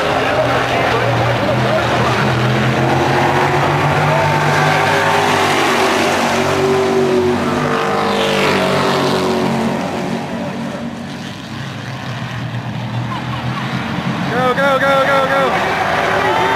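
Sportsman stock cars racing on an oval, their engines loud and rising and falling as the cars sweep past, easing off briefly about ten seconds in before building again. A voice shouts near the end.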